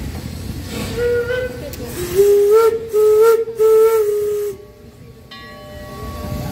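Steam locomotive whistle: a short toot about a second in, then three blasts run nearly together from about two seconds to four and a half, the pitch wavering slightly. A fainter, higher whistle tone holds steady near the end.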